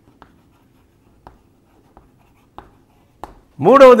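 Chalk on a blackboard while writing: a handful of short, faint taps and scratches, irregularly spaced.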